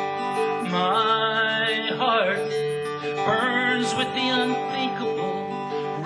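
Live country-folk song on strummed acoustic guitar, with a melody line over the chords that slides up and down between notes a few times.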